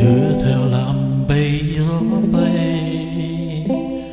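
A man singing long held notes over acoustic guitar accompaniment, the pitch shifting a few times and the sound fading toward the end.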